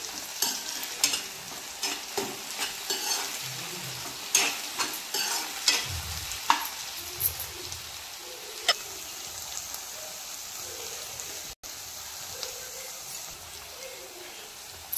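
Eggplant and onion pieces sizzling as they fry in oil in a wok, with a spatula stirring and scraping against the pan, clattering often in the first half. Later the stirring eases and a steadier sizzle is left.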